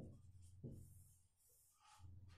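Faint marker strokes on a whiteboard during the first second or so, then near silence.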